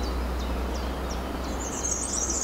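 Outdoor ambience: a steady low rumble under a faint hiss, with scattered bird chirps and a burst of high twittering near the end.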